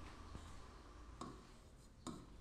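Near silence with faint room tone, broken by a single light tap of a pen against an interactive whiteboard's screen about a second in and small ticks near the end as writing begins.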